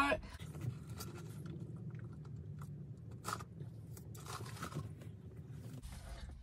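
Quiet mouth sounds of eating: soft chewing and a sip of an iced drink through a straw, with a few faint clicks and short strokes scattered through it.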